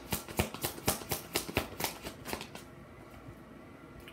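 A deck of tarot cards being shuffled by hand: a quick run of sharp card flicks and slaps for about two and a half seconds, then quieter handling of the deck.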